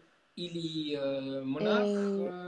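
A man's voice holding a long, level-pitched hesitation "uhh" in the middle of a sentence. It starts about a third of a second in, after a brief drop-out, and the pitch stays steady with only small steps.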